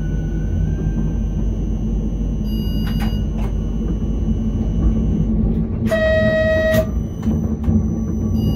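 Škoda RegioPanter electric train running, heard from the cab: a steady low rumble with a few sharp wheel clicks, and a short horn blast of just under a second about six seconds in.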